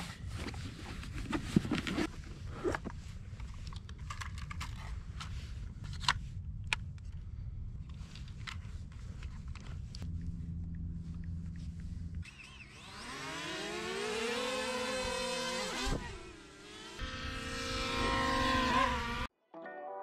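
DJI Mavic Mini quadcopter being unpacked and unfolded, with scattered clicks and knocks. About twelve seconds in, its propeller motors spin up with a whine that swoops up and down in pitch as it takes off. The whine cuts off suddenly near the end, where soft music starts.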